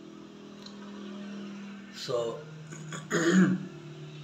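A man clears his throat once, harshly, about three seconds in, just after a single spoken word; a low steady hum runs under the pause before it.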